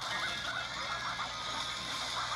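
Rapid gunfire over a music score, making a steady, dense din as wooden bleachers are shot apart.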